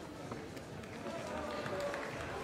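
Faint murmur of voices in the hall, with a few light ticks and no loud event.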